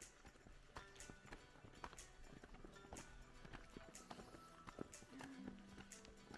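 Faint footsteps on a stony dirt path, about two steps a second, over faint background music.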